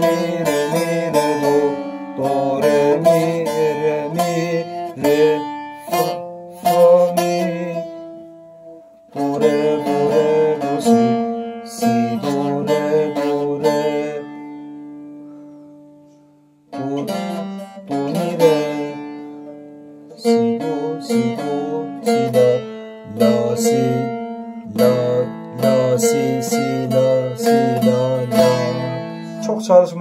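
Bağlama (saz) played solo, picking out a melody in the hicaz makam in phrases, with a short break about eight seconds in and a longer fade to silence around the middle before the playing resumes.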